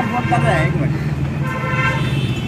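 A vehicle horn sounding in one steady blast, starting about a second in, over constant street traffic.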